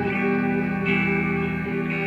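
Electric guitar, a Squier Classic Vibe '60s Stratocaster played through a BOSS GT-1 effects processor, playing slow ambient blues with sustained notes ringing over a looped part. A new note is picked just before a second in and another near the end.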